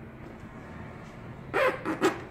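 Two short, loud animal calls close together about a second and a half in, over faint steady room noise.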